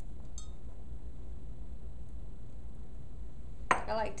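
A spoon clinks once against a glass mixing bowl of dough about half a second in, and knocks sharply against it near the end, over a steady low hum.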